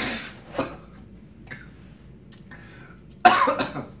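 A man coughing after a swig of straight vodka, the spirit catching in his throat: short coughs at the start and a louder, harsher cough near the end.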